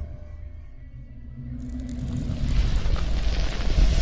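Cinematic logo-reveal sound design: a deep low rumble runs throughout. About one and a half seconds in, a rising rush of noise joins it, swelling louder toward the end as the logo bursts into embers.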